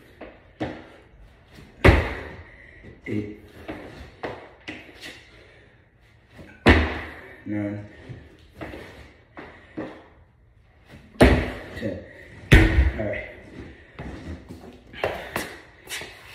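Heavy thuds of feet landing on a stack of car tires and the concrete floor during box-jump reps with a 30-pound slam ball. Four loud landings come a few seconds apart, the last two about a second apart, with lighter knocks between them and a short grunt about halfway through.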